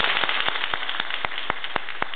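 Audience applauding after a piano piece. The clapping is densest at first, then one nearby person's claps stand out, steady at about four a second.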